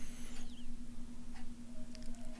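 Quiet background room noise with a faint steady low hum and a few soft clicks.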